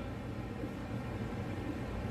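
Steady room noise: a low hum with an even hiss and no distinct work sounds.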